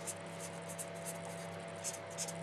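A pen writing by hand: short, scratchy strokes, several a second, over a steady low electrical hum.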